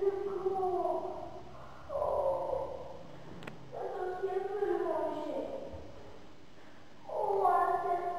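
A high voice making long, wordless wavering calls, about three or four of them with short gaps between, each sliding down in pitch at its end.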